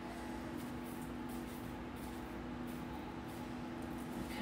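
A steady low electrical hum, two even tones held without change, over faint room noise, with no distinct handling sounds.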